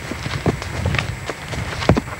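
A mare's hooves knocking as she walks on a dirt track: a few irregular hoof strikes, the sharpest just before the end.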